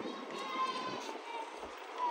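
Street ambience of a pedestrian crowd: distant voices of passers-by, with one higher voice calling out briefly about half a second in, over a faint steady background.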